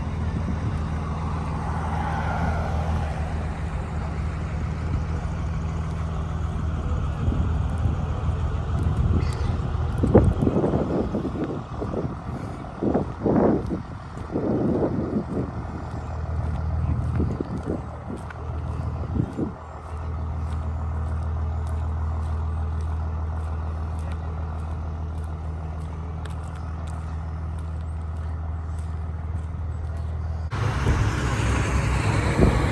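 A motor vehicle engine running at a steady idle, a low even hum. For about ten seconds in the middle it is broken by irregular louder sounds, then the steady hum returns.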